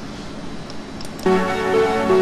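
Tracker module music starts abruptly about a second and a quarter in, played in 8-bit stereo through a homemade Covox parallel-port DAC. Before the music there is a steady hiss.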